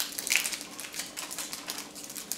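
A quick run of light clicks and taps, loudest just after the start, from the hard plastic casing and fold-down antennas of an ASUS RT-AX56U Wi-Fi router being handled over its cardboard box.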